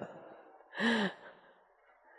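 A person's short voiced sigh, heard once about a second in, over faint room noise.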